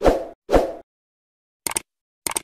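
End-screen animation sound effects: two soft pops about half a second apart as elements appear, then a short mouse click near the end as a cursor clicks the like button.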